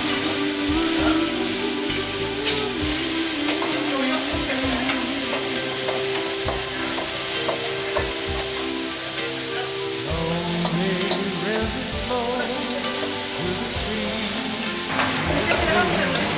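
Vegetables sizzling in hot woks over gas burners, with metal ladles scraping and knocking against the woks as they are stir-fried. A steady hum runs underneath.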